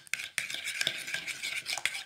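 Metal spoon stirring a thick chocolate cream in a bowl, scraping and clicking against the bowl in quick, continuous strokes.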